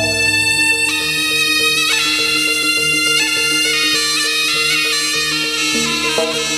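Live jaranan music: a slompret, the East Javanese reed shawm, plays long held notes that step to a new pitch every second or so over the ensemble's steady pulsing accompaniment.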